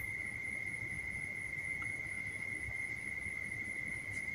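A faint, steady high-pitched whine on one unchanging pitch, with a fainter, higher tone above it, over low background hiss.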